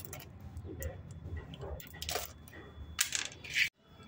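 Small white stones clicking against each other as they are picked out of a plastic basin by hand, a few scattered clicks, the clearest about two and three seconds in.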